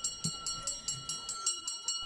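Ice-cream vendor's hand bell jingling rapidly and evenly, about six strikes a second, with a steady ringing tone under the strikes.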